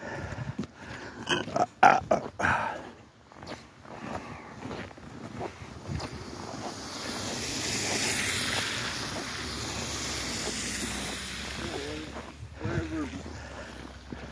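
Footsteps crunching on packed snow. In the middle, a car's tyres hiss past on the slushy road, swelling over a couple of seconds and then fading.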